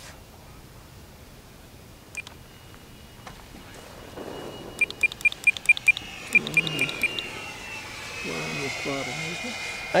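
Electric ducted fan of a large RC jet running at about half throttle: a faint high whine that grows steadily louder over the last few seconds as the jet comes closer. About halfway through comes a quick run of about ten short high beeps lasting two seconds.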